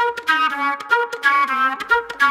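Unaccompanied flute playing a melody of short, quick notes, played back through studio monitors.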